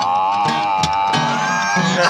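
Strummed acoustic guitars with one long held melody note over them, wavering slightly as it is sustained.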